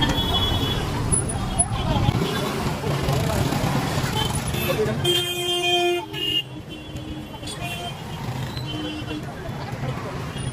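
Street traffic and crowd noise, with a car horn honking for about a second about five seconds in, followed by a few shorter, fainter toots.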